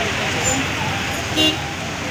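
Street traffic driving through floodwater, a steady wash of noise, with a short horn toot about one and a half seconds in.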